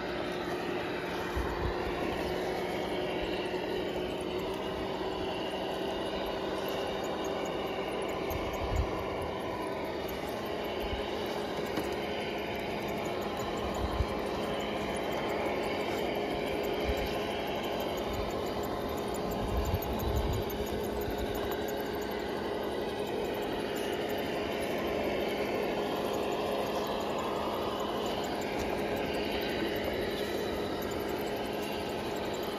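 Traxxas TRX6 RC crawler's electric motor and drivetrain whining steadily at crawling speed, the pitch creeping up slowly as the throttle changes, with a few low knocks as it bumps over the ground.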